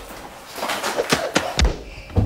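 Fight-scene impact sounds: several quick punches and body blows in the second half, ending in one heavy thud.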